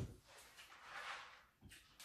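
Faint crunching of crispy deep-fried pork head skin, swelling to a soft crackly hiss about a second in, with a short knock near the end.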